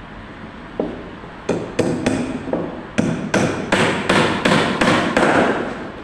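Hammer blows driving nails into the timber brace of a wooden shuttering (formwork) panel: a few spaced strikes, then a quicker, louder run of about three blows a second from about halfway, each with a short ring.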